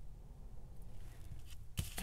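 Quiet room tone with a steady low hum and a faint click or two from small metal jewellery findings being handled: a safety pin threaded into a jump ring held in pliers.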